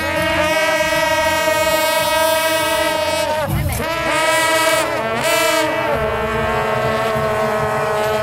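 Suona (Chinese shawm) playing long, held notes that glide from one pitch to the next, several notes sounding together, over a low rumble.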